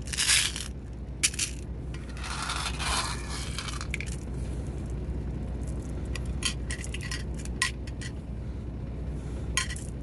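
Mermaid agate stone beads clinking and rattling against glass dishes: a few short rattles of beads being tipped out in the first seconds, one lasting about two seconds, then a run of light separate clicks as beads are set down one at a time onto a small glass dish.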